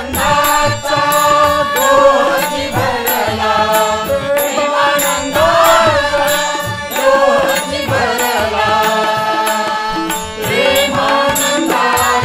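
Devotional bhajan music in a pause between sung verses: harmonium carrying the melody over tabla and small hand cymbals keeping a steady beat.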